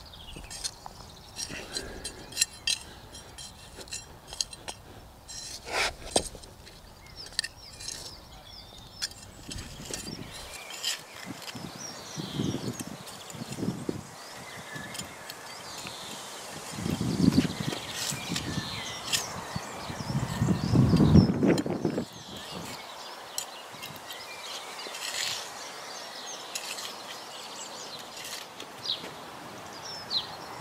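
Small hand trowel digging and scraping into crumbly soil while broad bean seedlings are planted out, with a few louder scrapes in the second half. Birds chirp in the background.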